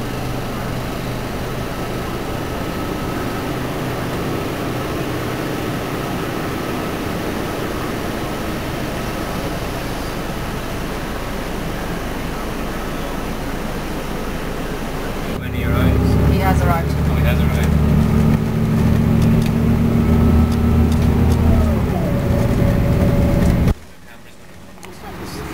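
A bus's engine and road noise heard from inside the cabin as it drives through town traffic. About two-thirds of the way through, the sound becomes louder and deeper, then cuts off suddenly near the end.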